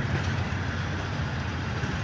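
Passenger coaches of a departing express train rolling past close by: a steady rumble of wheels on the rails.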